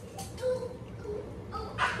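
A child's laughter in short, cackling bursts, with a louder laugh near the end.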